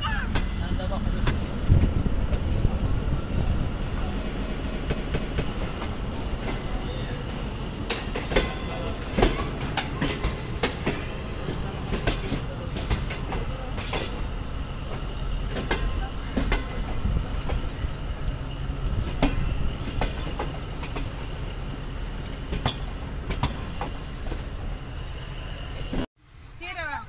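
Passenger train coach running on the rails, heard from its open doorway: a steady low rumble with irregular sharp clacks of the wheels over rail joints. The sound cuts off suddenly at the end.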